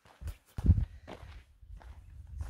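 A few footsteps on dry dirt and leaf litter, the loudest about halfway through.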